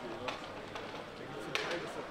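Indistinct voices of several people talking in the background, with two sharp clicks, a small one just after the start and a louder one about a second and a half in.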